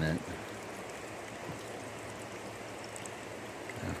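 Steady, even hiss of river water trickling and flowing.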